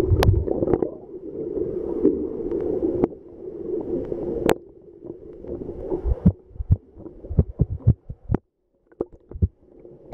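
Muffled water sound heard through a camera held at and below the water surface: a steady rushing gurgle in the first half, then a run of sharp clicks and knocks, dropping almost to silence for a moment near the end.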